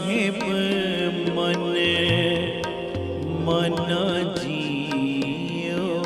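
Live Sikh shabad kirtan: a man's drawn-out devotional singing over steady, held accompanying notes.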